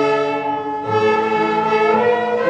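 A group of children's violins playing together in unison, long bowed notes held steady, with a change of note just under a second in.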